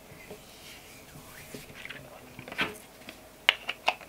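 Hands rubbing body lotion together, a faint soft, moist squishing, with a few sharp clicks in the last second or so as the plastic lotion tube is handled.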